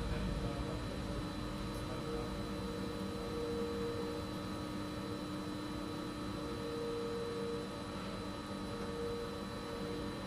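Steady machine hum with a faint background hiss, and a thin mid-pitched tone that comes and goes several times.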